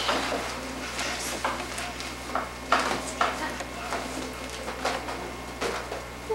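Rubber party balloons being batted by hand, giving scattered light taps and rubs as they knock together and against the chandelier, over a low steady hum.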